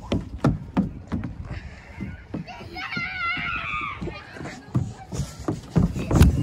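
A child's running footsteps, about three a second, with a high-pitched child's voice calling out in the distance around the middle.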